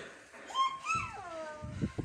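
A single high-pitched animal call, about a second long, falling steadily in pitch, followed by a couple of low thuds near the end.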